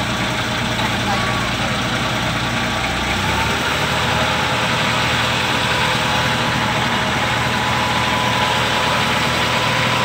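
Outrigger boat's engine running steadily under way, its low note changing slightly about three seconds in.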